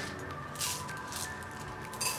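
Quiet background electronic music, with steady held tones and soft high-pitched swells recurring about twice a second.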